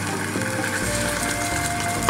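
A roux of flour and fat sizzling steadily in a pot as tomato purée is added, with quiet background music holding a few long notes over it.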